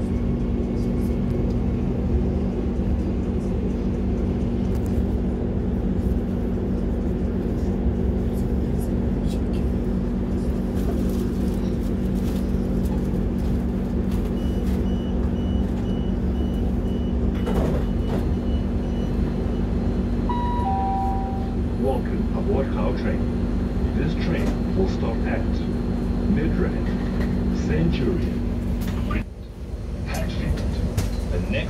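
Steady hum and rumble inside a moving electric passenger train. About twenty seconds in, a two-note falling chime sounds once.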